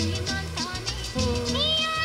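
Music with a steady drum beat and bass line; about a second and a half in, a high gliding, wavering melody line comes in.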